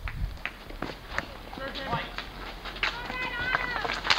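Street hockey play on an asphalt court: scattered sharp knocks and clacks of sticks and ball, with players' running steps. Voices call out from the players and crowd, with one drawn-out shout near the end.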